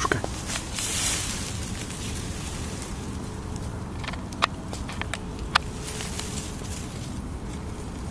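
Rustling of grass and handling noise close to the microphone, louder for a moment about a second in, with a couple of sharp clicks around the middle over a steady background hiss.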